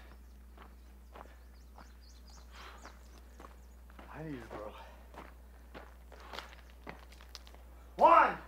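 Faint footsteps of a man walking at a steady pace, first over dry grassy ground and then on brick paving, where the steps are sharper clicks.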